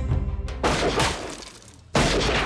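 Trailer music tails off, then about half a second in a crashing, shattering sound effect hits and dies away over about a second.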